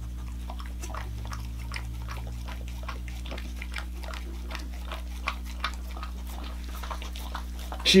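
Dog licking at the opening of an aluminium beer can held out to it: a run of small, irregular wet clicks, over a steady low hum.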